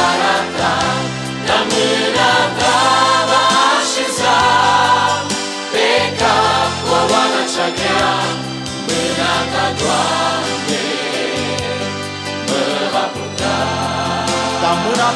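A mixed vocal group singing a Romanian Christian song in harmony through microphones, over instrumental accompaniment with held bass notes.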